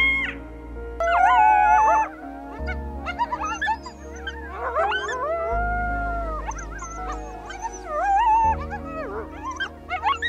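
Coyote howling: a string of long, wavering howls that slide up and down in pitch, with short breaks between them.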